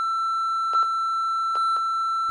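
One long steady censor bleep tone covering spoken words, with a few faint clicks under it.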